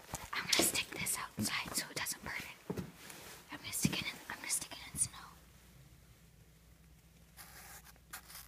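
A person whispering in irregular breathy bursts for about five seconds, then a much quieter stretch.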